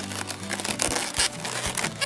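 Latex modelling balloons rubbing and squeaking against each other as they are twisted together, a rapid run of short crinkling noises over steady background music.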